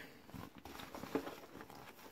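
Faint rustling and a few soft crackles of a thin plastic costume being unfolded and smoothed out by hand.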